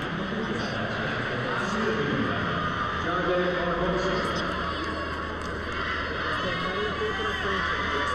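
Voices talking over the steady hubbub of an arena crowd.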